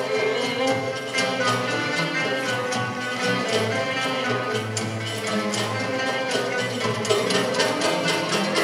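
A Turkish art music ensemble plays the instrumental introduction of a tango in makam Nihâvend, with a steady beat and no voice yet.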